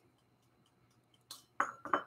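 Near silence, then a few clinks about a second and a half in: pieces of broken-up chocolate dropping into a small glass bowl.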